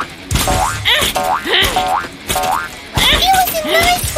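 Cartoon boing sound effects: a quick series of short rising springy twangs, over background music.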